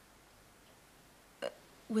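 A pause in a woman's speech: faint room tone, then a short hesitant "uh" about a second and a half in, with her next word starting at the very end.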